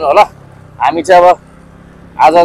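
Two short, loud bursts of a voice close to the microphone, over the steady low hum of a motorbike engine on the move.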